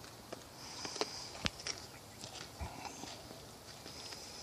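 White-tailed buck chewing dry apple chips from a hand at close range, with faint sniffing and a few sharp crunching clicks, the loudest about a second and a half in.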